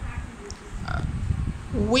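A pause in the talk: a short hesitant "uh" from a voice over a low, rough rumble of background noise, with speech starting again at the very end.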